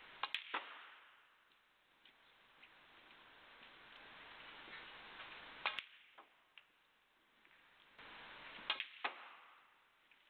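Snooker balls clicking: sharp clacks of the cue tip on the cue ball and of ball striking ball, in three short clusters, near the start, about halfway through and near the end, over a faint hush.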